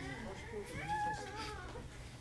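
A single high-pitched, animal-like call about a second long, rising and then falling in pitch, over a low room hum.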